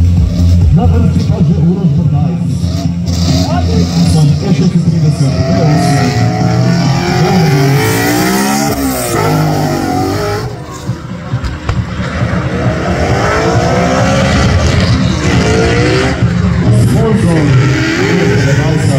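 BMW E36 drift car's engine revving hard, its pitch sweeping up and down again and again from about six seconds in, with the rear tyres squealing as it drifts and spins them in a smoky burnout.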